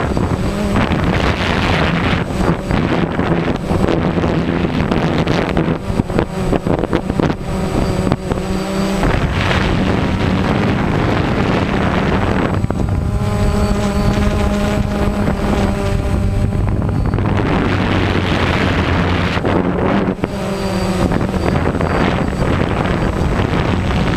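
DJI Phantom quadcopter's motors and propellers humming steadily in flight, with wind buffeting the microphone. The hum shifts slightly in pitch, and its tones stand out most clearly a little past the middle.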